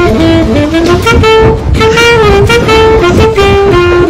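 A saxophone plays a quick melody, moving note to note several times a second, with a steady low rumble underneath.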